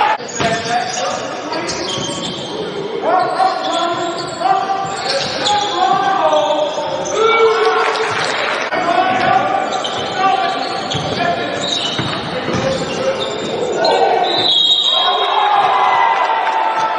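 Basketball bouncing on a hardwood gym floor during live play, with voices throughout, echoing in the large gym.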